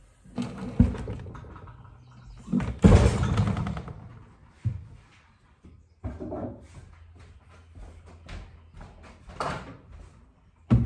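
Clunks and knocks of heavy metal being handled at a shop crane that holds a Bridgeport mill's ram and turret casting. A louder clatter comes about three seconds in, and lighter clicks and taps follow over a faint steady low hum.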